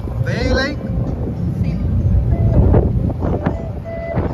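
Wind buffeting the microphone over the steady low rumble of a passenger ferry under way, heard from its open deck. A brief high-pitched voice shortly after the start.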